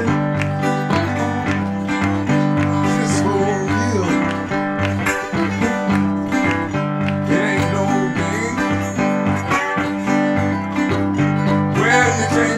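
Live blues band playing an instrumental passage: acoustic guitar over a steady stepping bass line, with bent melody notes from a rack-mounted harmonica.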